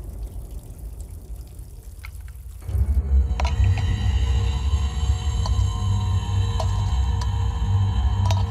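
Tense, suspenseful film background score: quiet at first, then about two and a half seconds in it swells into a loud, deep pulsing bass under sustained high tones, with a few sharp struck accents.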